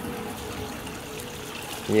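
Water trickling steadily at a garden fish pond, with a faint steady hum underneath.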